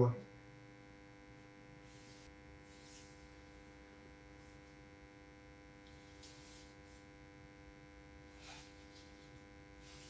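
A steady electrical hum made of several pitches, with a few faint brief rustles.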